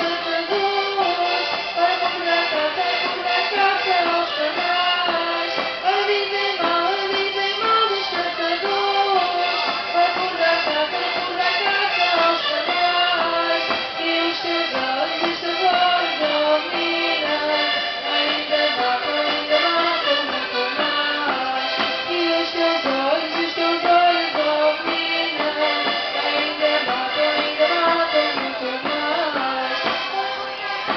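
Accordion playing a traditional Portuguese folk dance tune, a continuous melody stepping from note to note at a steady dance pace.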